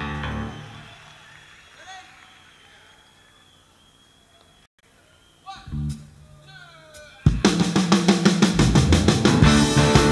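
Live rock band starting a song. After a few quiet seconds with a few scattered guitar notes and a short low chord, drums, bass and electric guitar come in together about seven seconds in and play on at a steady beat.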